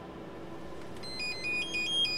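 A phone's electronic ringtone begins about a second in: a quick melody of high beeping notes stepping between pitches over faint steady hiss. It is an incoming call.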